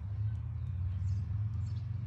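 Outdoor ambience: a steady low rumble with faint bird chirps.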